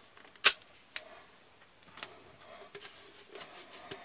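A few sharp clicks and taps of a metal end piece being handled and pushed onto a black PVC drain pipe. The loudest click comes about half a second in, with fainter ones near one and two seconds.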